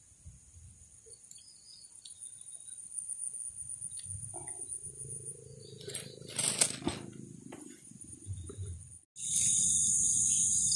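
Insects chirring steadily in the background, under rumbling rustles of close handling as the fishing rod and reel are picked up, with a louder rustle about six and a half seconds in. The sound drops out briefly near the end, then the insect chirring returns louder.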